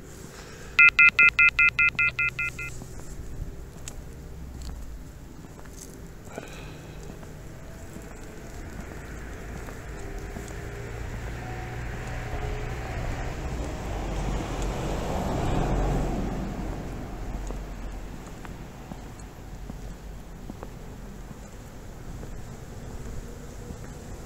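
A fast run of about a dozen electronic beeps in three tones, fading, about a second in. Then a vehicle passing, its noise swelling to a peak just past the middle and fading away.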